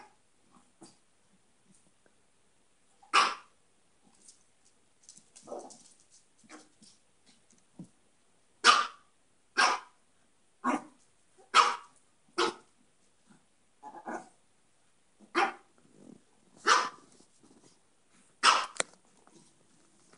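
Small dogs barking during play-fighting: about a dozen short, sharp barks at irregular intervals, a few of them lower and weaker.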